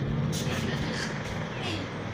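Soft chewing of a mouthful of cornstarch chunks with the mouth closed, over a steady low hum.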